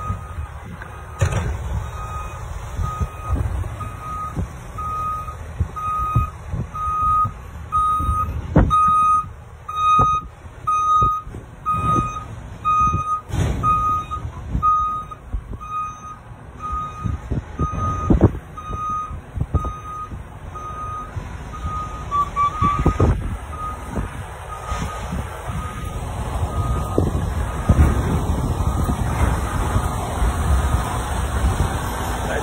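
A vehicle's reversing alarm giving a steady run of evenly spaced beeps, growing louder and then fading away about two thirds of the way through, over low road rumble with a few sharp knocks.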